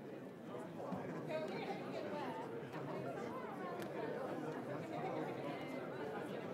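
Indistinct chatter of many people talking at once in a large hall, with no single voice standing out.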